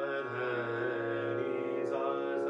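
Bina harmonium sounding sustained reed notes while a man sings with it, Hindustani classical style: his voice slides into a note at the start and holds it steady for about a second. The melody belongs to a lesson on Raag Bhairav.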